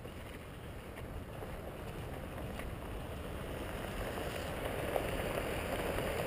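Pickup truck approaching on a gravel road, engine and tyre noise on the gravel growing steadily louder as it draws near.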